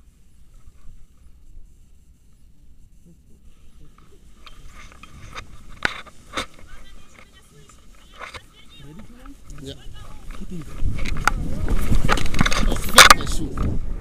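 Tandem paraglider launch: scattered clicks and knocks of harness and gear as the wing comes up overhead, then from about eleven seconds in loud wind rumbling on the camera microphone as the pair run and lift off.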